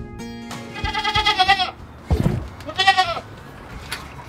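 Nigerian Dwarf goat bleating twice, a wavering call of about a second and then a shorter one, with a low thump between them. Acoustic guitar music fades out under the first bleat.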